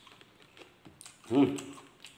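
Close-miked eating mouth sounds: a run of small wet clicks and smacks, then a short, loud hummed "mmm" of enjoyment a little past halfway.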